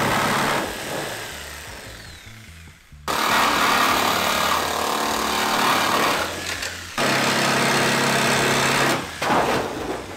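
Jigsaw with a metal-cutting blade sawing through the sheet-steel side panel of a VW Transporter T6 van, cutting out the corners of a window opening. The saw dies away over the first three seconds, starts again abruptly, runs for about four seconds, pauses briefly, runs two seconds more, then stops and starts unevenly near the end.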